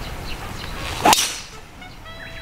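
A golf driver swung off the tee: a brief whoosh of the clubhead, then a sharp crack as it strikes the ball about a second in. It is a cleanly struck drive, called perfect.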